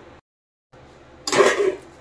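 A single brief metal clatter of a steel plate, used as a lid, against a steel kadhai, a little past the middle, with a short ringing tail. Before it the sound drops out to dead silence for about half a second, with a low steady background on either side.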